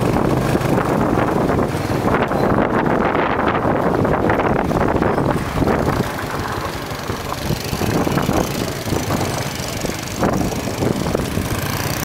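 Small motorcycle engine running under way along a dirt track, with wind on the microphone; a little quieter after about six seconds.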